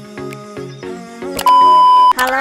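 Background music with a short repeating note pattern. About one and a half seconds in it gives way to a loud, steady, high beep: the test tone heard with TV colour bars, used as a transition effect.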